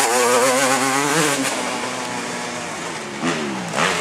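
Off-road enduro motorcycle engine revving as the bike rides past on a dirt track. The note wavers up and down with the throttle, drops away after about a second and a half, then revs up again twice near the end.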